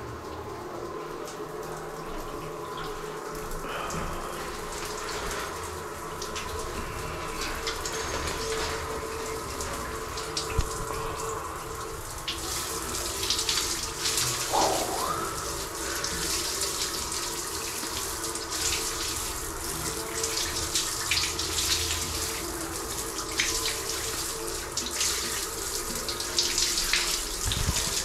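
Water running in a small tiled bathroom. From about twelve seconds in, a shower spraying and splashing, louder and more uneven.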